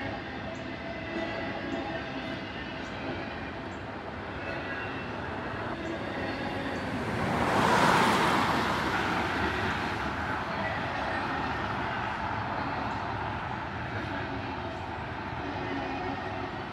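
Double-stack intermodal freight cars rolling steadily over the rails. About halfway through, a car passes close by and the sound briefly swells louder before easing back.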